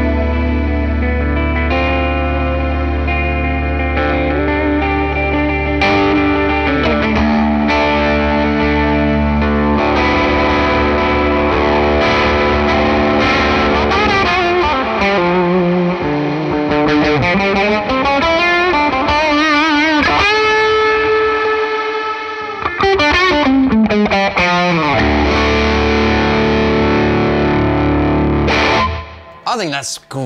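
FGN Boundary Odyssey electric guitar with a pair of direct-mount humbuckers, played through an overdriven amp. It starts with sustained distorted chords over a held low note, then moves into single-note lead lines with string bends and wide vibrato, and stops a second or so before the end.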